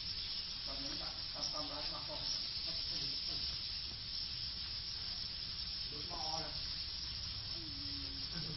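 Dense, steady high-pitched chirping of a large flock of swiftlets, blending into a continuous hiss, with voices talking briefly underneath.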